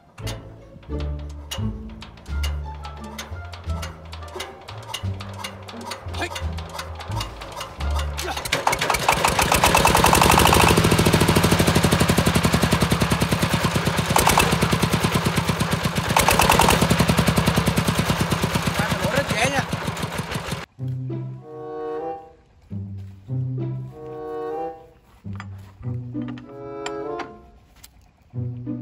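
Background music with low string notes, then, about eight seconds in, a hand-cranked single-cylinder diesel engine catches and runs loud with rapid, even firing for about twelve seconds. The engine sound cuts off abruptly and the music returns.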